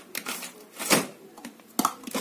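Hands rummaging through pens and stationery: irregular rustling and light clicks, with a sharper knock about a second in and another near the end.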